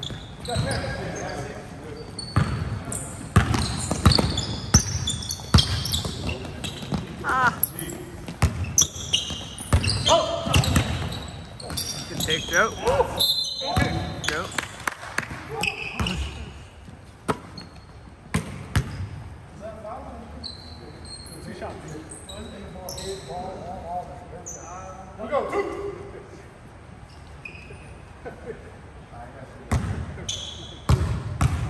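Basketball bouncing on a hardwood gym floor during a pickup game, with sharp impacts, short high squeaks and players' shouts echoing in the hall. Busiest through the first two-thirds, quieter near the end.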